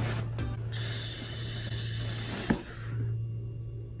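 Background music, with a cardboard box scraping as a boxed laptop is slid out of its shipping carton for about two seconds, and a single knock near the end of the slide.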